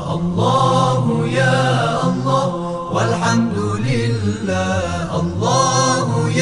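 Arabic devotional chant: a solo voice sings long, gliding held notes over a steady low drone.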